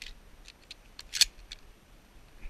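Dry spruce twigs and brush snapping and scraping as a person pushes through thick undergrowth: a string of short sharp cracks, the loudest a little past the middle.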